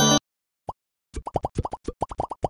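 The last moment of a music sting cuts off, then short, quick, upward-sweeping pop sound effects follow: one alone, then a rapid run of about seven from about a second in, with a logo's small squares popping into view.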